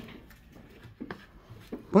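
Quiet room with two faint short taps, one about a second in and one near the end, before a voice starts right at the end.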